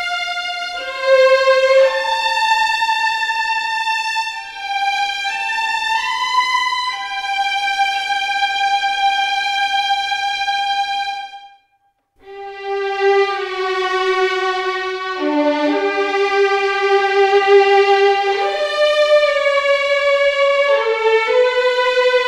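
Cinematic Studio Strings first-violin section sample library playing a slow legato melody with vibrato up full: long held notes joined by short slides. The line breaks off briefly a little past the middle, then a second phrase follows.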